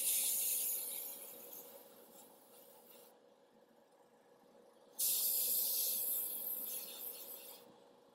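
Badger Sotar airbrush spraying thin red paint in two bursts of hiss: the first trails off over about three seconds, then after a two-second pause a second starts suddenly and runs for nearly three seconds. A faint steady hum lies underneath.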